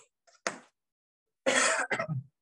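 Chalk tapping twice on a blackboard, then a man clearing his throat: one loud rasping burst about one and a half seconds in, followed by a shorter one.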